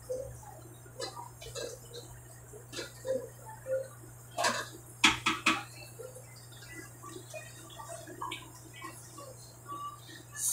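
Scattered light clinks and knocks of a cooking utensil against a pot on the stove, loudest in three sharp clicks close together about five seconds in, over a low steady hum.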